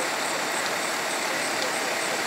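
Fire engines running at the scene, a steady, even noise that does not change.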